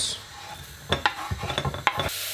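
Minced shallots being scraped with a wooden spoon off a plastic cutting board into a pot of hot oil. From about a second in, the spoon knocks and scrapes on the board and pot several times, over the start of the oil sizzling.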